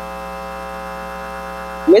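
Steady electrical mains hum in the chamber's microphone feed: a constant buzz with many even overtones that does not change. A woman's voice starts right at the end.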